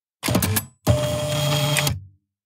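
A short mechanical clatter, then about a second of steady, even whirring that cuts off suddenly, like a printer or similar machine running: a sound effect marking a transition.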